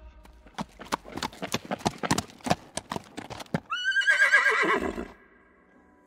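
Horse sound effect: hooves clip-clopping for about three and a half seconds, then a single wavering horse whinny lasting about a second.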